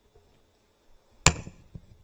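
A single loud, sharp knock about a second in, with a short ringing tail, then a fainter knock just after.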